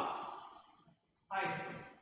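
A man's voice trailing off at the end of a word, then after a short silence a brief voiced sigh about a second and a half in, fading away.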